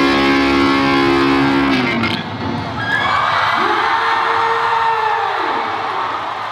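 A loud dance track plays and cuts off about two seconds in, then an audience cheers with whoops.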